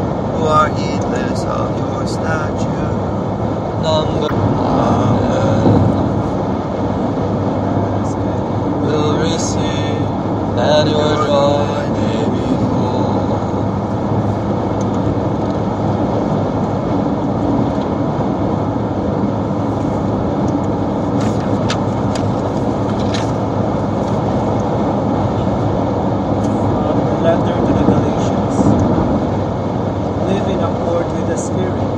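Several voices reciting psalm verses together in chant, too blurred for the words to come through, over a steady low background hum.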